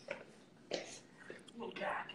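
Faint whispering and breathy voice sounds in a few short bursts, with no music.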